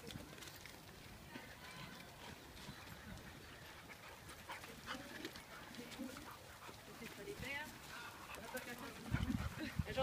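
A pack of dogs playing on a dirt path, faint and scattered, with a few short yelps or whines, and a louder low rumble near the end.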